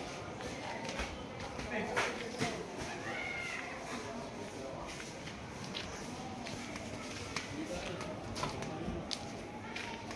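Indistinct background voices of people talking, over a steady background hum, with a few sharp knocks about two seconds in.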